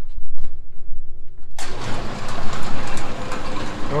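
Brunswick bowling pinsetter starting a cycle: a low hum, then about a second and a half in the loud running noise of the machinery comes in suddenly and keeps going.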